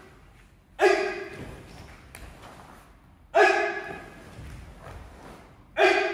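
Three loud shouted calls, evenly spaced about two and a half seconds apart, each ringing on in a large hall, pacing a karate class's techniques in unison.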